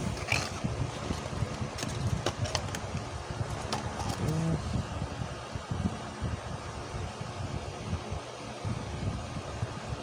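Light clicks and rustles of paper sticker sheets and a plastic cube being handled on a table, over a steady low background rumble.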